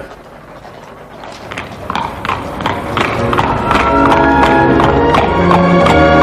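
Horse hooves clipping along at a steady walking pace, the sound of a horse-drawn carriage setting off, with music fading in underneath and growing loud by the end.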